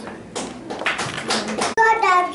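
Handheld microphone handling noise: a quick run of bumps and rubbing as it is passed between hands, lasting about a second and a half. A voice starts just before the end.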